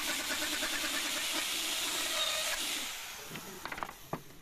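Electric plunge router running and cutting into a wooden board: a loud, steady whine with a hiss. It starts abruptly, then dies down over the last second or so.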